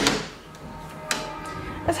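Balcony door being opened: a sharp click of the handle right at the start, then a softer knock about a second in as the door swings open. Faint steady music runs underneath.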